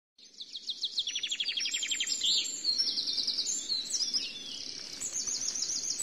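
Small birds singing, several overlapping songs made of quick runs of repeated high chirps and trills.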